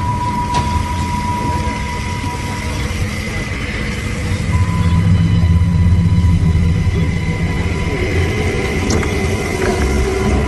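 Film soundtrack: a low, steady rumble under sustained thin high tones, the rumble swelling about halfway through.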